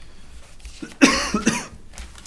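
A person coughing, a quick run of two or three coughs starting about a second in.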